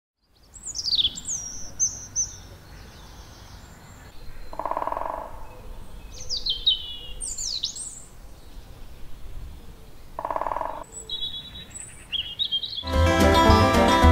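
Woodland songbirds singing: a string of high, quick chirps and whistled phrases that sweep downward, with two short lower calls about 5 and 10 seconds in. About a second before the end, acoustic plucked-string music starts and becomes the loudest sound.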